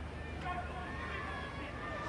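Ground ambience at a stopped match: faint, indistinct voices over a low steady hum.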